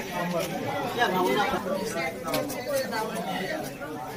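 Indistinct chatter of several people talking at once in a room, with a few faint clicks around the middle.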